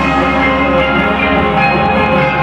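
Live rock band playing, the electric guitars holding ringing, sustained chords over bass and light drums.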